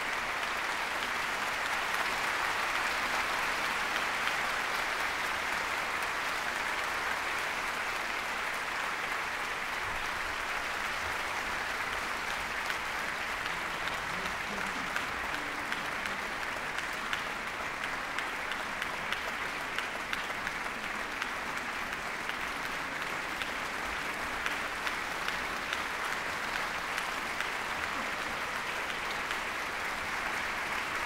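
Concert audience applauding: dense, steady clapping that eases slightly in the second half, where single claps stand out.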